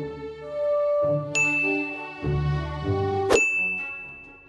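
Background music with two bright bell-like dings laid over it, the first about a second and a half in and a louder one near the end, each ringing on as a long high tone.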